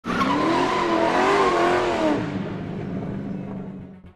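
Car tyres squealing over a loud rushing noise, the squeal wavering in pitch for about two seconds, then a steady low hum that fades out.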